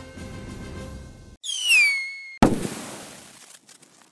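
The outro music ends, then a logo sound effect plays: a whistle falling in pitch for about a second, cut off by a sudden loud bang that fades away, like a firework.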